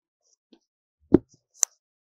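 Hands handling a rigid cardboard vinyl LP box: a faint tap, then a loud dull thump about a second in, and a sharp click half a second later.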